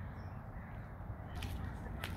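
A crow cawing faintly over quiet outdoor background noise.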